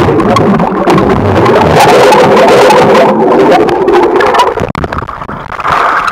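Loud, muffled rush of water and bubbles heard underwater, with scattered sharp clicks.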